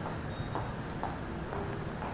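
Footsteps on a hard floor, about two steps a second, over a steady low rumble of station noise.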